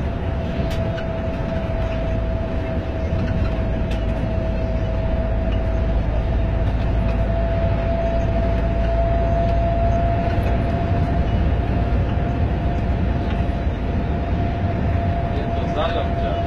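A coach on the move heard from the driver's cabin: steady engine and road noise with a thin, steady whine held throughout.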